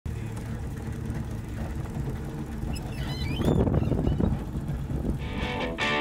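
Low rumble of an old car running, louder for a moment with a brief high squeal about three seconds in. A music track with guitar starts near the end.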